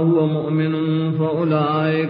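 A man's voice chanting in long, sustained melodic notes with slow bends in pitch, without the breaks of ordinary speech.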